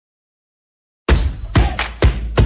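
Silence, then about a second in a sudden loud shattering crash sound effect, like breaking glass, with a second sharp hit about half a second later, opening an animated intro sequence.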